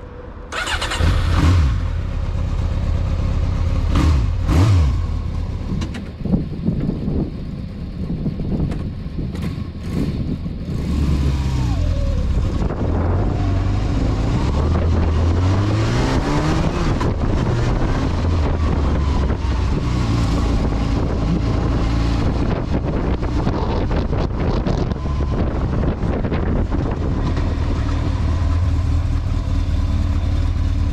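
1992 Yamaha XJ600S Diversion's air-cooled inline-four engine, revved sharply a couple of times while standing, then pulling away with its pitch rising through the gears and running steadily as the bike is ridden.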